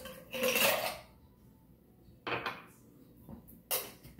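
Ice cubes clattering into a metal cocktail shaker tin: a loud rattle about half a second in and a smaller one near the middle, then a sharp metallic clink near the end as the shaker is handled.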